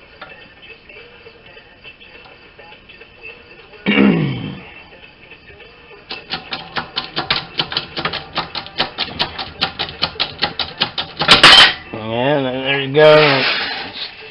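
Arbor press driving a punch through a coin in a punch and die set: an even run of rapid clicks for about five seconds, then one loud, sharp crack as the punch breaks through the coin.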